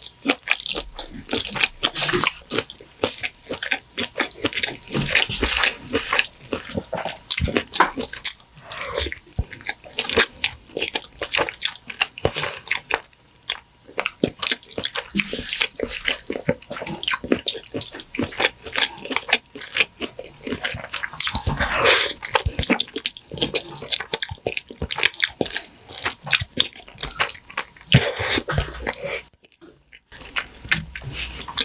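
Wet, close-up chewing and mouth sounds of eating creamy shrimp fettuccine alfredo: a dense run of small sticky smacks and clicks. It breaks off briefly just before the end.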